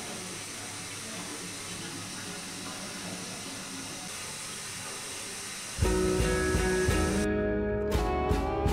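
A steady, even hiss of rushing air or water fills the first six seconds. Then it gives way to louder guitar-led music.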